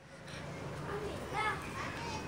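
Children playing, with one faint child's call about one and a half seconds in over low background noise.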